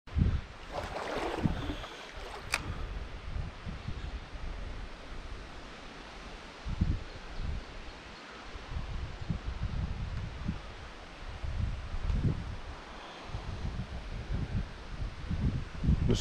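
Gusty wind buffeting the microphone in irregular low rumbles, over the faint steady rush of river water, with one sharp click about two and a half seconds in.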